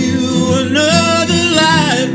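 A man singing a wordless melody whose pitch glides and wavers, over a strummed steel-string acoustic guitar.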